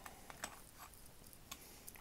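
A few faint, small clicks as a stainless steel screw-down watch caseback is turned off by hand; otherwise near silence.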